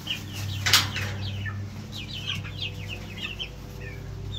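Young Cornish Rock broiler chickens peeping and clucking, many short high calls, with one brief sharp sound a little under a second in and a low steady hum underneath.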